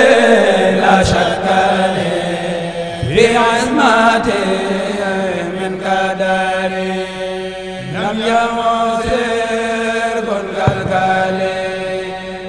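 A male voice chanting a khassida, an Arabic devotional poem of the Senegalese Mouride tradition, in long drawn-out, ornamented notes. New phrases begin about three and about eight seconds in, over a steady low drone.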